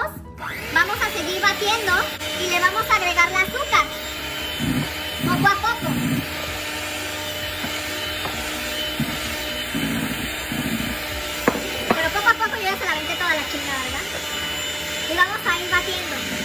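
Electric hand mixer running steadily, its beaters whipping stiffly beaten egg whites in a bowl.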